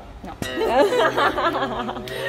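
A sharp click, then women laughing and chattering over background music with held notes.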